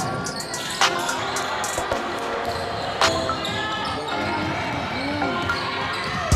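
Background music with sustained tones, and two sharp percussive hits about two seconds apart.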